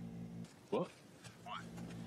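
Faint speech: two short questioning words ("What?" … "What?") over a steady low hum.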